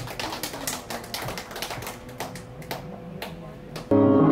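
Scattered, irregular handclaps from a small audience. Just before the end, a keyboard comes in loudly with the song's intro.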